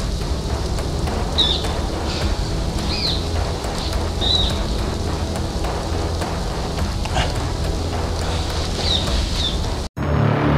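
Birds chirping a few times in short, high notes over a low steady drone and an even hiss. The sound cuts out abruptly near the end.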